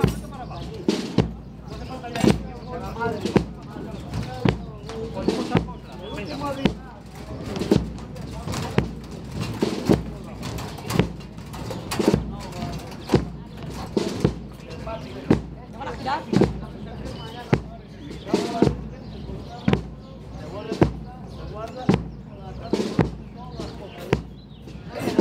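A steady marching beat of single hard knocks, about one a second, keeping the slow pace of a procession on the march, over crowd murmur.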